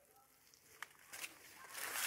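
Near silence, broken by one faint click a little under a second in and a soft brief rustle shortly after.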